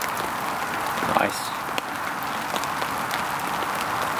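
Venison steak in its port marinade boiling and sizzling in a small pan on a wood-burning twig stove: a steady hiss with faint crackles from the fire below.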